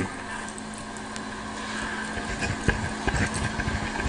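A Livescribe smartpen scratching and tapping on paper as it writes, picked up close by the pen's own microphone. The writing noises start about halfway through, over a steady low hum.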